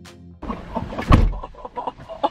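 Background music ends abruptly. A woman then makes irregular, exaggerated wordless vocal noises, with a loud thump about a second in.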